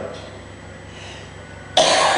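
An elderly man coughing: one sudden loud cough bursts out near the end, after a quiet pause that holds only faint room hum.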